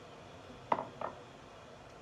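Two faint, short knocks about a third of a second apart, the light clatter of small kitchen dishes being handled. Otherwise quiet room tone.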